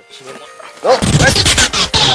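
A faint rising rush, then a sudden loud burst about a second in: a voice crying out over dense noise with several sharp hits.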